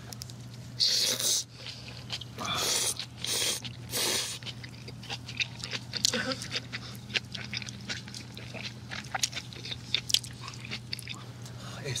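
Ramen noodles being slurped and chewed close up against a binaural ASMR microphone: several long slurps in the first four seconds, then a run of wet chewing and lip-smacking clicks over a faint steady hum.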